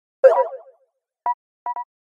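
Cartoon animation sound effects: a short, pitched springy sound, followed by three brief beeps, one on its own and then two in quick succession near the end.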